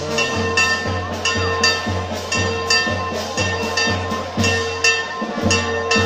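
Church bells pealing, struck rapidly and evenly about twice a second, each stroke ringing on over the next.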